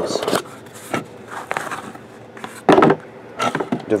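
Cardboard trading-card box being opened and handled: short scrapes and rustles of cardboard, with one louder scrape near the end.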